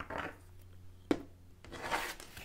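Playing-card-sized tarot cards handled on a wooden tabletop: soft sliding and rubbing of card stock, with one sharp tap about a second in and more rubbing near the end.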